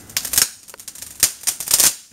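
Fiberglass rebar bent by hand crackling and snapping as its glass fibers break under the bend. A few sharp cracks come at the start, and a louder run of cracks follows in the second half as the bar ruptures.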